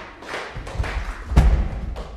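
A break in saxophone quintet music, filled with light tapping and one heavy thump about one and a half seconds in.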